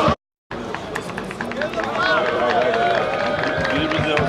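Several voices calling out across a football pitch, not clearly intelligible, over open-air background noise, after a brief dropout to silence just after the start.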